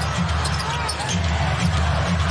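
Arena sound of an NBA game: a basketball dribbled on the hardwood court in irregular low thuds over a steady crowd murmur.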